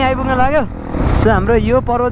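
A voice singing a wavering, drawn-out melody with no clear words, over the low running noise of a dirt bike engine and wind.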